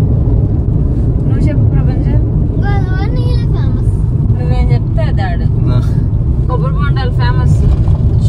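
Steady low road and engine rumble inside the cabin of a moving Maruti Suzuki Celerio, with voices talking over it.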